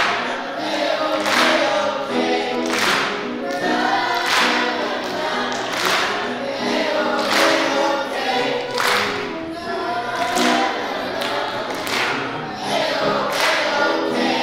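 High school choir singing an upbeat pop arrangement with piano accompaniment, with a sharp accent on the beat about every second and a half.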